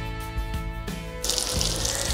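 Background guitar music that stops about a second in, giving way to the steady hiss of panko-crusted lamb chops frying in hot oil in a sauté pan.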